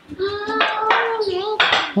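A young child's high-pitched wordless vocal sound, held and wavering for about a second and a half, mixed with short clatters like dishes being handled.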